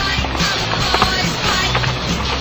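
Skateboard wheels rolling on concrete under a rock music soundtrack, with a sharp click about a second in.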